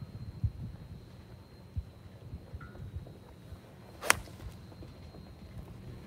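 A golf iron striking a ball off turf: one sharp crack about four seconds in. Gusty low rumbling of wind on the microphone runs underneath.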